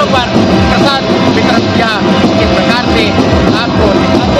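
Loud, constant procession din: band music with heavy drumbeats, mixed with many overlapping voices.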